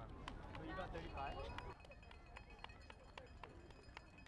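Quick, even footsteps, about four a second, with people's voices in the background during the first second or so.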